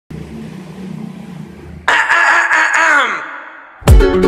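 A rooster crows once about two seconds in, a held call that falls in pitch as it dies away, over faint outdoor background. Acoustic guitar music starts just before the end.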